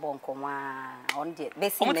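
A person's voice holding one long, drawn-out vowel sound for about a second, then breaking into quick conversational speech.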